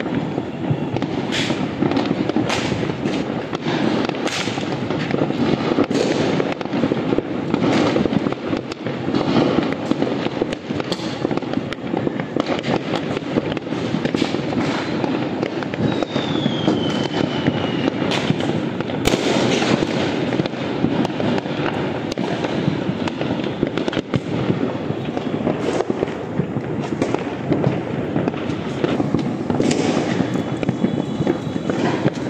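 Many firecrackers and fireworks going off across a city at once: a continuous crackle and rumble of near and distant bangs. A short falling whistle sounds a little past the middle.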